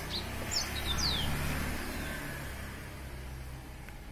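Small birds chirping in short, quick, falling notes during the first second or so, over the low hum of a passing motor vehicle that swells about a second in and then slowly fades away.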